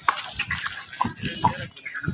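Hooves of a pair of bulls walking on concrete, scattered knocks, under people's voices and short calls.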